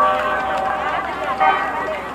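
Several people's voices talking and calling out over one another.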